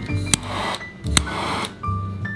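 Handheld butane kitchen torch clicked twice, each click followed by a short hiss of gas about half a second long, over background piano music.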